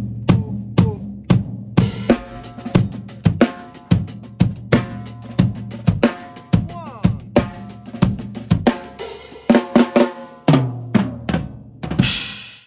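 Acoustic drum kit played with sticks: a groove built on the rumba clave in its two-three form, spread across bass drum, snare and ringing toms. Cymbals come in near the end, finishing on a cymbal hit.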